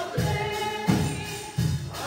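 Live gospel music: singing over drums and bass keeping a steady beat, about four beats every three seconds.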